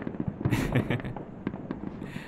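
Fireworks going off: a run of quick crackling pops, with a louder crackling burst about half a second in.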